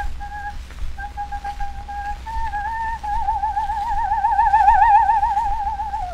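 Coloratura soprano singing an aria on a 1906 acoustic recording played from a 78 rpm disc. She sings short, separate high notes, then holds a long high note with wide vibrato that swells louder about two-thirds of the way through. The tone is thin and whistle-like, over a low rumble and a few clicks of disc surface noise.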